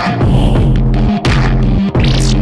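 Electronic intro music built on a heavy, throbbing bass buzz that breaks off and restarts in short pulses, with a burst of static-like hiss near the start.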